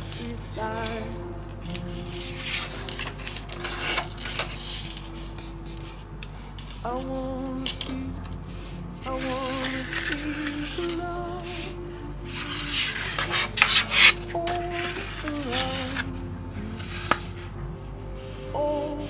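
A strip of paper rustling and crinkling as it is folded and creased by hand, in several bursts with the loudest about three-quarters of the way through. Background music plays throughout.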